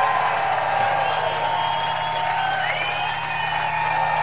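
Club audience cheering and whooping at the end of a rock song, with shrill gliding whistles. A steady low hum runs underneath from about a second in.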